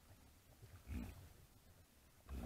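A white-lipped peccary gives one short grunt about a second in, over a faint background.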